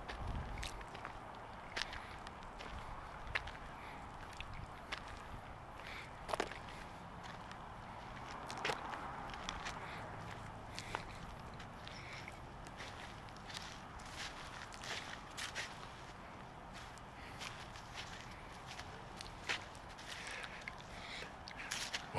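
Slow, irregular footsteps on dry grass and dirt, heard as faint scattered crunches and clicks over a quiet, steady outdoor background.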